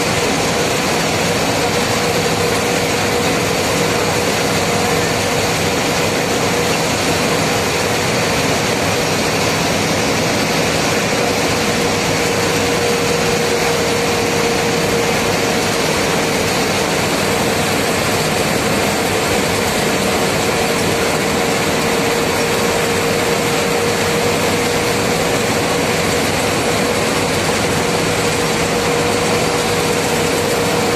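Steady engine and road noise of a vehicle cruising at speed on a smooth highway, with a constant hum running through it.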